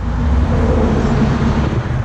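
Road traffic on a busy street close by: a steady low rumble of passing cars.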